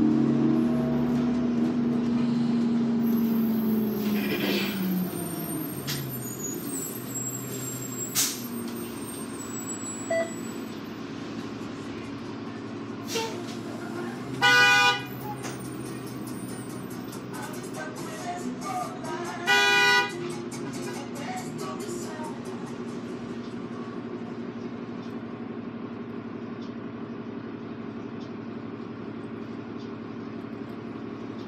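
Diesel engine of a New Flyer D40LF transit bus, heard from inside, winding down over the first few seconds and then idling steadily in stopped traffic. About halfway through a vehicle horn gives two short honks about five seconds apart.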